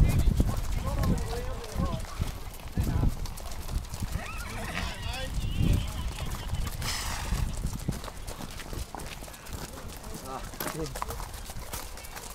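A string of ridden horses walking on a dirt road, their hooves clip-clopping in a loose, overlapping patter, with a horse whinnying and riders' voices in the background.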